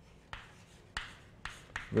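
Chalk writing on a blackboard: several sharp taps of the chalk against the board, with light scraping between them, as words are written.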